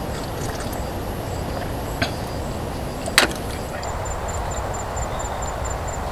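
Outdoor forest ambience: a steady low rumble with a faint high insect-like tone, and a quick even run of short high chirps, about five a second, from a little after halfway. Two sharp clicks about two and three seconds in, the second louder.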